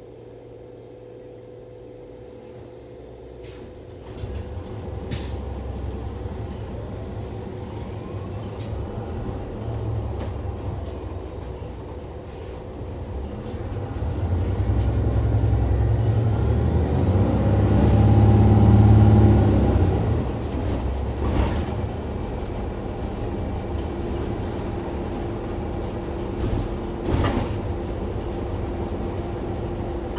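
Inside an Iveco Urbanway 12 Hybrid city bus pulling away: drive noise starts about four seconds in and builds, with a rising whine and a strong low hum, to its loudest a little past halfway. It then settles into steady running, with a few knocks and rattles from the cabin.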